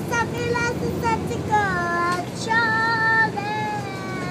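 A toddler girl singing a made-up song in a high voice, with long held notes that glide up and down in pitch.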